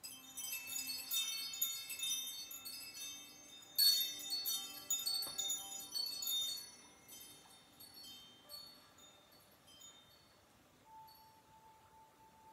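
Wind chimes ringing in a cluster of bright, overlapping metallic notes, with a louder burst about four seconds in, then slowly dying away.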